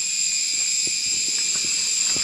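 Insects droning steadily at an even high pitch, with a few faint light knocks.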